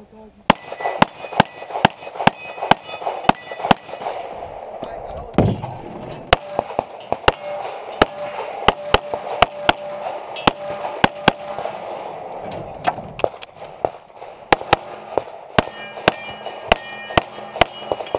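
Compensated STI 2011 open-class pistol in .38 Super firing a USPSA stage: dozens of sharp shots in quick strings a third to half a second apart. Steel targets ring after hits in the first few seconds and again near the end.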